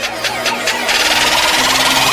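Electronic intro sound effect: a fast pulse of about six beats a second building in loudness, turning into a dense rising whoosh about a second in, leading into a logo sting.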